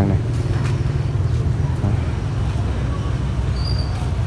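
Steady low rumble of background motor traffic.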